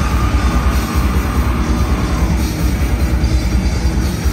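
Grindcore band playing live: heavily distorted electric guitar and bass over fast drumming, a dense, loud wall of sound with a held high note over the first couple of seconds.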